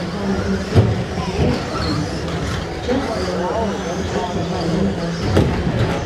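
Radio-controlled stock trucks running on an indoor track, with people talking in the background. Two sharp knocks, about a second in and near the end.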